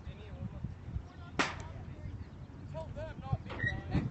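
A single sharp knock about one and a half seconds in, over a steady rumble of wind on the microphone, with faint distant voices calling later on.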